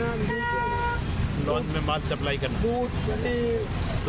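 A vehicle horn sounds once, a steady tone held for under a second near the start, over the continuous rumble of scooter, motorbike and car engines in slow city traffic.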